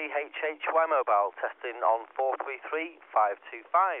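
A man's voice received over a 70 cm UHF FM radio link, sounding thin and phone-like with the lows and highs cut off. It is a test call sent back to base from a 2-watt handheld about a mile away, coming through clearly and continuously.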